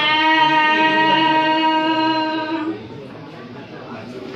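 A woman singing a Red Dao (Iu Mien) folk song into a microphone, holding one long steady note that ends about two and a half seconds in; after it only faint room noise remains.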